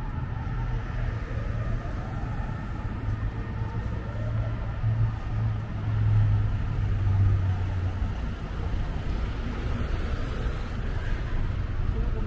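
City street traffic with a steady low rumble from cars, and one car passing close by and loudest about halfway through.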